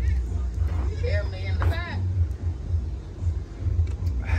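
Low, fluctuating rumble of wind buffeting the microphone, with a short burst of voice about one to two seconds in.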